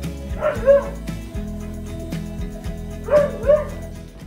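A dog barking over background music: a quick pair of short barks about half a second in, and another pair near the end.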